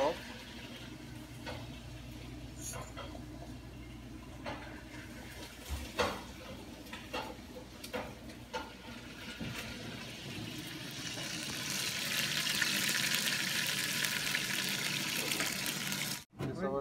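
A few scattered knocks and clicks of kitchen work. Then, from about ten seconds in, a steady sizzling hiss builds and holds: chicken bones sizzling in a steel saucepan over a gas burner.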